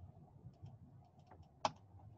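Light clicks of typing on a computer keyboard, with one sharp, louder click near the end.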